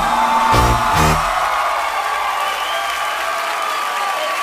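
A live band ends the song with two closing hits about half a second and a second in. Studio audience applause and cheering follow.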